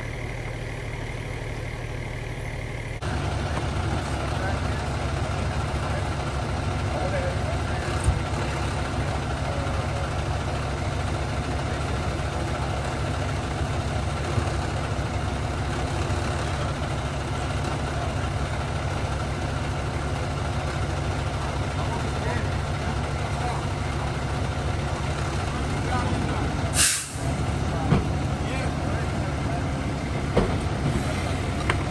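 Heavy diesel fire apparatus engine idling steadily, growing louder about three seconds in. Near the end there is one short, sharp hiss of air, like an air-brake release.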